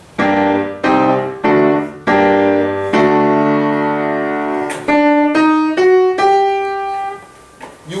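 Piano playing a run of chords in G minor, the last one held, then a slow rising four-note line D, E-flat, F-sharp, G with the top note held. This is the ascending line played with the unraised E-flat, the note that the melodic minor avoids in favour of E natural.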